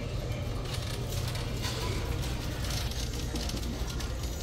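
Shop-floor ambience: a steady low hum under a light, even background noise, with faint scattered clicks.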